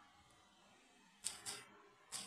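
Near silence, then two light taps of a finger on a phone touchscreen about a second in, a quarter second apart, as the text is tapped to bring up the keyboard.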